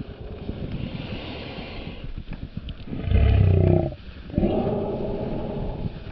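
Footsteps crunching in snow, with two deep, drawn-out voice sounds in the second half: a short loud one about three seconds in and a longer one just after it.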